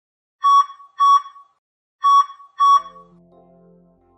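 Four short electronic beeps of one high tone, heart-monitor style, in two pairs with a pause between them. Soft synthesizer music fades in right after the last beep.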